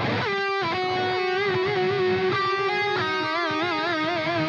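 Lead electric guitar track played back from the mix session: a slow melody of long sustained notes with wide vibrato, moving from note to note, with a delay effect on the track.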